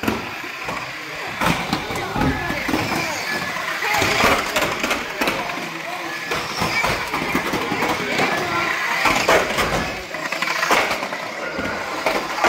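Overlapping voices of spectators chattering and calling over radio-controlled banger cars racing, with scattered sharp knocks and clatters as the cars hit each other and the track barriers.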